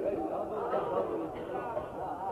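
Indistinct speech from several voices at once, quieter than the main speaker's voice.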